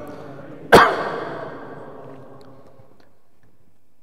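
One loud, sharp cough close to the microphone, under a second in, its echo fading over about a second.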